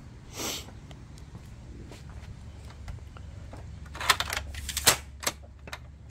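Aluminum work platform leg being reset: sharp metal clicks and rattles of the spring-loaded locking pins and the sliding leg tube, in a quick cluster about four seconds in and again near the end. A brief soft rush comes about half a second in.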